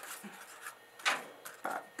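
Cardboard toilet-paper tube being handled: light rubbing, with a couple of short soft knocks about a second in and near the end as the cut-down tube is set on the tabletop.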